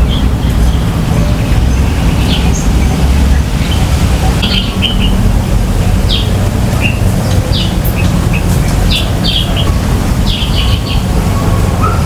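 Wild birds chirping in short, scattered calls over a loud, steady low rumble of wind on the microphone.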